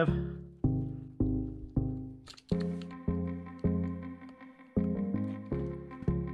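Background music: a run of pitched notes, each starting sharply and dying away, about two a second.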